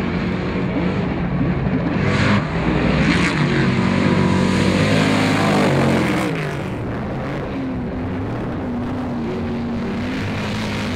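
Trophy truck's race engine revving up and down as the truck races by, with two short rushes of noise a couple of seconds in. About six seconds in the sound drops to a lower, steadier engine note.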